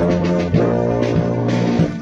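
Brass band playing: sustained brass chords over a low brass bass line, the notes changing every half second or so.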